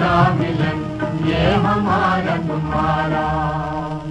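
Old Hindi film song playing: long held notes with a wavering vibrato over a steady low drone, near the close of the song.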